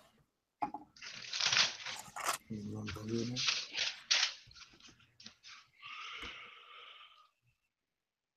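Paper pages of a Bible being flipped and rustled in quick bursts while someone looks up a verse, with a faint murmured voice partway through.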